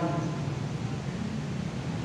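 Steady, even background noise of the room, a hiss-like hum with no distinct events.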